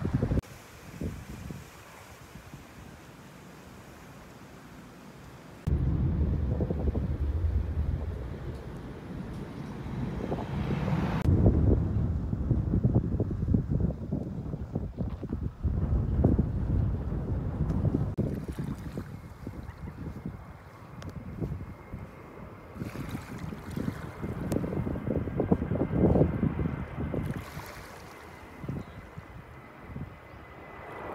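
Wind rumbling on the microphone in uneven gusts, over small waves at a sandy shoreline. The first few seconds are quieter, before the wind noise comes in suddenly.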